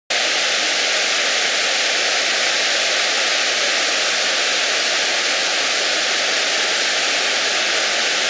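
Waterfall and river rapids: a loud, steady rush of churning whitewater that cuts in abruptly at the very start.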